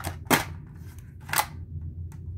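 Plastic clamshell VHS case snapping open and the cassette being pulled out: two sharp plastic clicks about a second apart.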